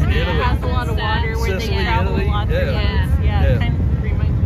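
A woman talking over a steady low rumble from the running motor of the small boat she is riding in.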